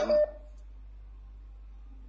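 A man's voice finishes a word in the first moment, then a steady low electrical hum on the phone-in line carries on with no speech, a faint steady tone joining near the end.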